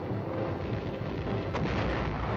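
Battle sound of exploding shells: a continuous heavy rumble, with a sharper blast about one and a half seconds in.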